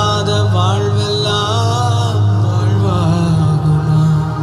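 A man singing a slow Tamil Christian worship song into a microphone, his melody wavering and ornamented, over a steady, sustained low accompaniment.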